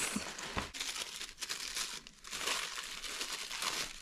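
Tissue paper rustling and crinkling as a small gift is unwrapped by hand, in uneven handfuls with a short lull a little past halfway.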